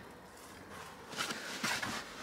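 Rummaging through a plastic garden storage box: stored items and bags shifting, with a few short rustles and knocks starting about a second in.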